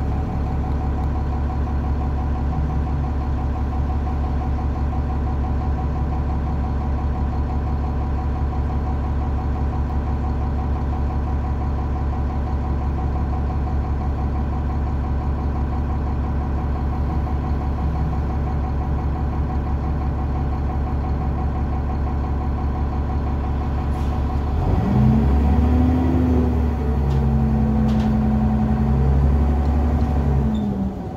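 Cummins ISC diesel engine of a 2001 New Flyer D30LF transit bus heard from inside the cabin, running steadily at low revs, then about 25 seconds in revving up and getting louder as the bus accelerates, its pitch dropping again near the end.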